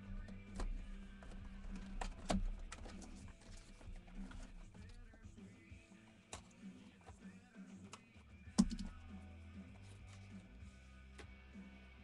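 Faint background music under scattered clicks and taps from a sealed trading-card box being opened and its cards handled. The sharpest clicks come about two seconds in and again about eight and a half seconds in.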